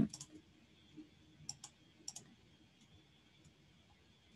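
Faint clicks of a computer mouse and keyboard, a few separate light clicks near the start and a small cluster about one and a half to two seconds in.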